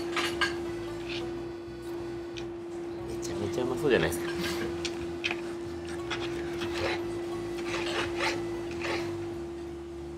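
A knife sawing through roast wagyu rib roast on a plate, with irregular rasping strokes and the cutlery scraping and clicking on the plate, loudest about four seconds in. A steady hum runs underneath.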